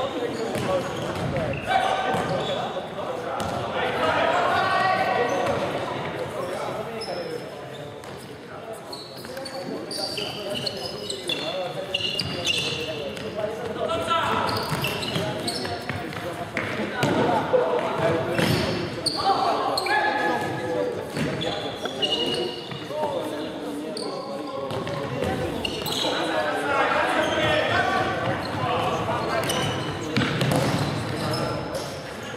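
Futsal match in a sports hall: players shouting to each other, echoing off the hall's walls, with the thuds of the ball being kicked and bouncing on the wooden floor.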